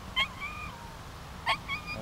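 A bird calling twice, about a second and a quarter apart. Each call is a sharp high note followed by a shorter trailing tone that dips in pitch.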